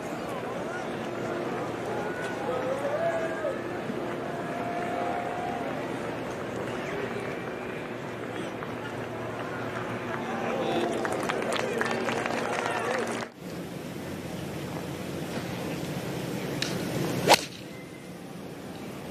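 Gallery murmur with scattered voices, then, near the end, one sharp crack of a golf club striking the ball on a full tee shot.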